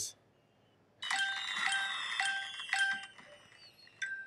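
Electronic chime jingle from a smartphone charades game app: a short run of bell-like notes repeating about every half second. It starts about a second in and fades out near the end, after the round's timer has run out.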